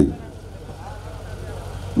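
A short pause in a man's speech through a public-address microphone, filled by the steady low hum and background noise of the sound system and venue. His voice cuts off at the start and resumes at the end.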